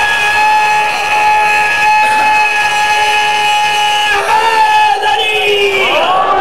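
A man's voice holding one long, high shouted call for about four seconds, then shorter calls that fall in pitch, as the gathering raises their hands in response.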